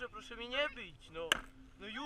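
A raised voice shouting, then one sharp knock about 1.3 seconds in, from a stick struck against the dirt bike or its rider.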